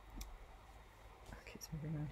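Quiet room tone with a few faint clicks and a short hum from a person's voice near the end.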